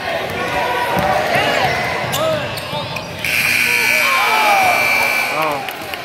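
Gymnasium scoreboard horn sounding one steady blast of about two seconds, starting about three seconds in, that marks the end of the second quarter at halftime. Voices shout across the gym throughout, over the sounds of basketball play on the court.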